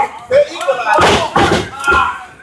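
A wrestler slammed onto the wrestling ring: heavy thuds of a body hitting the mat, with voices shouting around them.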